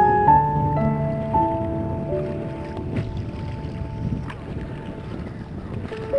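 Soft piano music: a few long held notes ringing out and fading, thinning and quieter toward the middle, over a faint steady rushing noise.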